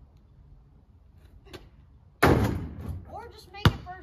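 A sudden loud burst of noise about two seconds in that fades over about a second, then near the end one sharp knock: the basketball hitting the portable hoop.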